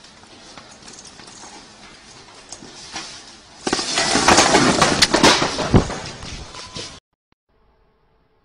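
A wire display bin full of plastic play balls rattles as someone climbs it, then crashes over about halfway through, followed by a loud clatter of the metal frame and balls bouncing and scattering across the floor. It cuts off suddenly, and near the end there is only a faint steady hum.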